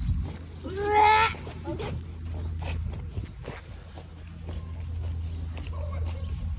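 A short, high-pitched drawn-out vocal cry about a second in, rising and then falling, over a steady low rumble with a few faint knocks.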